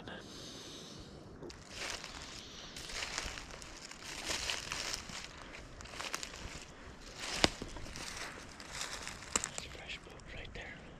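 Footsteps shuffling and crunching through dry fallen oak leaves, an uneven run of rustling and crackling with a few sharp snaps, the loudest about seven and a half seconds in.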